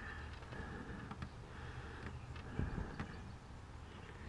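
Quiet background: a steady low hum and faint hiss, with a few faint ticks and a brief soft low noise about two and a half seconds in.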